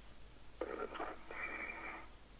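Space-to-ground radio loop: a burst of narrow-band radio static, as on a keyed channel with no clear words, starts about half a second in and lasts over a second.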